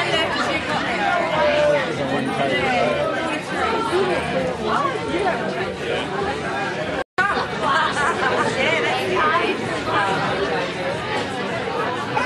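Many people talking at once in a crowded room, a steady din of overlapping conversation. The sound cuts out completely for a split second just past halfway.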